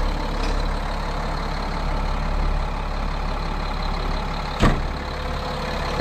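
Military truck's diesel engine idling steadily, with a single sharp knock about four and a half seconds in.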